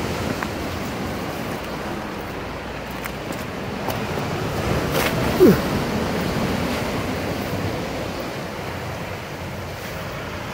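Sea surf breaking and washing over the rocks of a rocky shore, a steady rush that swells a little around the middle. Just past halfway there is a brief sound falling in pitch.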